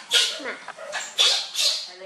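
Baby macaque squealing: about four short, high-pitched cries in quick succession.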